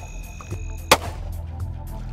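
A single sharp bang about a second in, from a bangstick on a pole fired into an alligator in the water to dispatch it, heard over background music.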